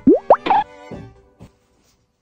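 Cartoonish editing sound effect: two quick rising pops, then a short pitched tone over light background music that fades out about a second and a half in.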